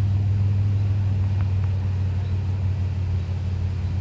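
A steady low hum, with two faint ticks about a second and a half in.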